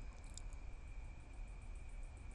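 Faint room tone in a pause between speech: a steady thin high whine over a low rumble, with a couple of faint clicks about a third of a second in.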